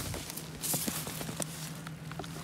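A hard plastic rifle case being handled and opened: a series of short clicks and knocks from its latches and lid, with a brief rustle, over a faint low steady hum.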